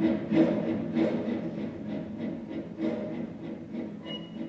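Orchestral music with strings playing a rhythmic passage that gradually gets quieter.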